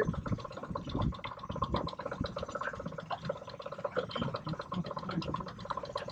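Small outboard motor running steadily at trolling speed, with a fast, even run of small clicks over its hum.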